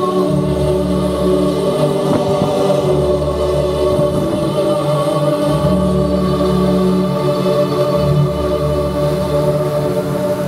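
Recorded operatic music with a choir singing sustained chords over long held bass notes, played through a PA loudspeaker.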